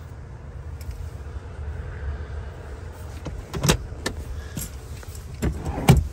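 Second-row captain's chair of a Jeep Grand Cherokee L being folded and moved for third-row access: a few sharp latch clicks and knocks, the loudest about two-thirds of the way through and near the end, over a steady low rumble.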